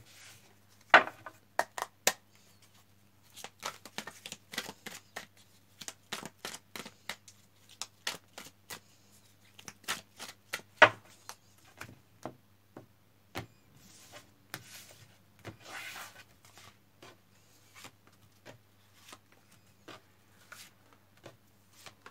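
A deck of divination cards being shuffled by hand and dealt out onto a wooden table: irregular clicks, taps and slaps of card stock, with a brief riffling stretch after the middle.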